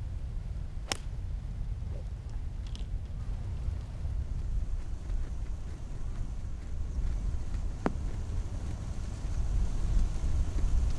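Golf club striking the ball on a tee shot: one sharp click about a second in, over a steady low rumble of wind on the microphone. A fainter single tick follows near the end.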